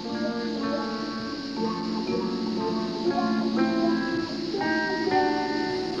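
Background music from the TV show's score: held notes that change in steps every half second or so.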